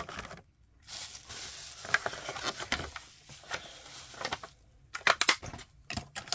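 Clear plastic packaging from unboxed miniature figures being handled and gathered up: a crinkling, crackling rustle with scattered clicks, and a quick run of sharp crackles about five seconds in.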